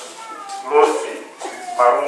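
Speech: a person talking into a microphone, heard through the hall's loudspeakers, in short phrases with rising and falling pitch.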